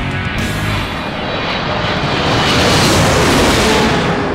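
Title music giving way to a swelling jet aircraft roar, a sound effect that builds steadily and is loudest near the end.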